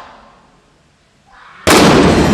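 A stunt-show pyrotechnic bang. The tail of a sharp crack fades away at the start, then a sudden, very loud blast comes near the end and carries on loud with a long ring in the large hall.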